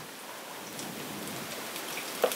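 Apple fritters frying in hot oil in a frying pan on a gas stove: a steady sizzle.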